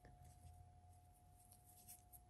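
Near silence: faint rustling and a few small ticks of a crochet hook working yarn, over a faint steady tone.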